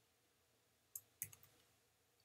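Near silence broken by two faint, short clicks about a second in, a third of a second apart, from a computer's mouse or keys.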